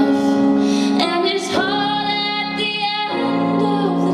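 Woman singing into a microphone over instrumental accompaniment, amplified through a PA, holding long notes with a change of note about a second and a half in and a falling slide near the end.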